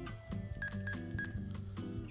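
Quiet background music with a few soft low notes. About half a second in come three short, evenly spaced beeps: the TidRadio TD-H8 handheld's keypad tones as a frequency is punched in.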